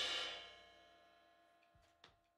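The last hit of a drum-backed music track, a cymbal crash with a held chord, ringing out and dying away to near silence about a second in.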